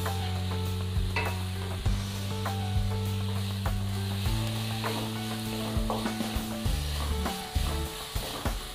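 Chopped onions and ginger-garlic paste sizzling in oil in a non-stick pan, with a spatula stirring and scraping against the pan in short irregular clicks.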